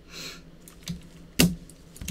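Hard plastic trading-card cases being handled and set down on a table: a short soft rustle at first, a few light clicks, then one sharp click about one and a half seconds in.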